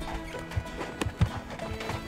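A horse's hooves thud irregularly in snow as it strains on a rope to drag a bison carcass. Background string-band music runs underneath.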